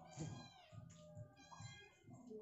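Two faint, high-pitched animal cries about a second apart, the first falling in pitch.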